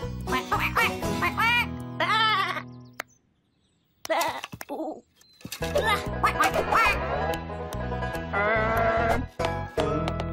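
Bouncy children's cartoon music with a lamb's voiced bleats over it, a run of arching calls in the first seconds and a wavering one near the end. The music stops dead for about a second partway through before starting again.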